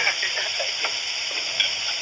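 Steady hiss of the recording's background noise, with faint, brief voices and laughter from the people at the table.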